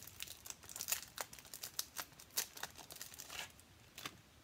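Plastic packaging crinkling and tearing as a new pack of adhesive gilded gems is opened: a dense run of sharp crackles.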